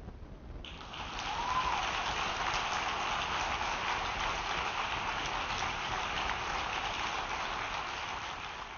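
Audience applause breaks out suddenly just under a second in and keeps up steadily.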